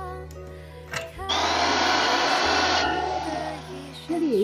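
Electric drill boring into a bamboo pole: a short burst of drilling of about a second and a half that then tails off, heard over background music.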